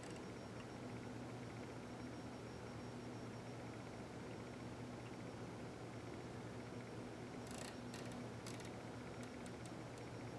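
Quiet room tone: a steady low hum, with a few faint ticks between about seven and nine and a half seconds in.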